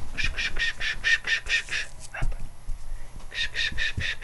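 Giant schnauzer puppy squealing and whimpering in quick runs of short, high yips, about seven a second, one run in the first two seconds and another near the end, with a dull thump about two seconds in.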